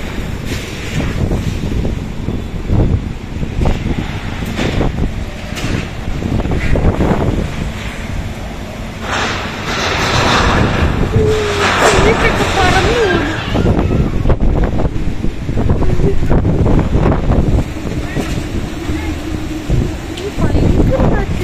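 Strong storm wind gusting against the microphone, a heavy low rumble with a stronger gust from about nine to fourteen seconds in.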